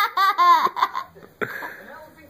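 A young girl laughing hard in a quick run of high-pitched peals that fades out after about a second, then a short sharp sound.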